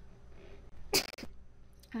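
A woman sneezing once, a short sharp burst about a second in.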